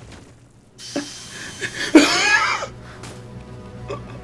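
Animated-cartoon soundtrack: background music with a sharp click about a second in, then a loud wavering, swooping sound about two seconds in, settling into quieter held music.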